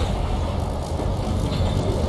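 Steady low rumble with a faint hiss above it, the ambient sound bed of a science-fiction TV episode's soundtrack.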